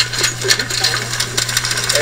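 Chain-link fence rattling and clinking, a rapid run of small metal clicks, as a tug-of-war rope threaded through it is pulled against a big cat. A steady low hum runs underneath.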